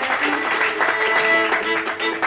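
Solo Cajun fiddle playing a tune, bowed with two strings sounding together in steady, held notes.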